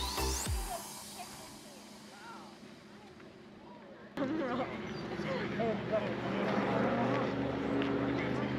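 Background music ends with a rising sweep in the first second, leaving quiet outdoor ambience. About four seconds in the sound jumps to open-air background with distant voices and a faint steady high-pitched hum.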